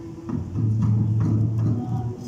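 Live stage music: a steady low drone with a regular beat of strikes about twice a second.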